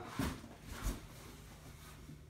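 Faint rustling and light bumps from items being handled inside an open cardboard box, with two brief noises in the first second, then quiet room tone with a faint steady hum.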